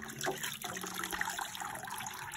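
Water trickling and splashing back into a bucket as wet slaughtered chickens are lifted out of the cold water.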